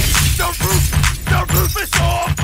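Baltimore club music: a heavy, rapid kick-drum pattern under short chopped melodic or vocal fragments, with a bright crash-like noise burst at the very start.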